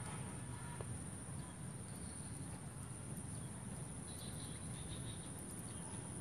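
Quiet outdoor ambience: a steady high-pitched insect drone over a low background rumble, with a few faint calls near the start.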